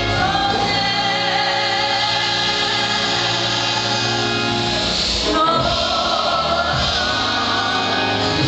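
A gospel praise-and-worship song sung by a group of voices together over keyboard accompaniment, with long held notes and a new phrase starting a little past halfway.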